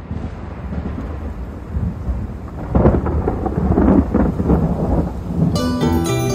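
Thunder rumbling over steady rain, swelling to its loudest in the middle. Just before the end, music comes in with bright, ringing pitched notes.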